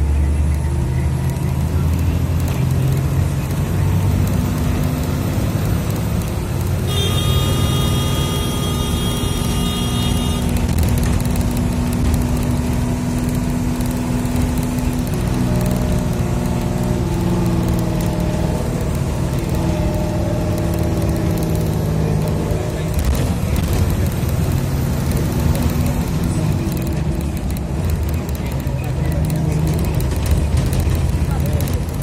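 Steady low engine and road rumble of a road vehicle, heard from inside while it drives along. A high-pitched horn sounds for about three seconds, starting about seven seconds in.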